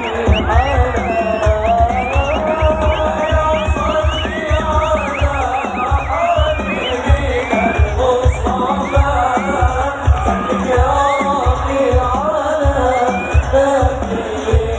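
Live sholawat music played loud over a concert PA: many voices singing a devotional song over a steady beat of hadrah frame drums, with a large crowd joining in.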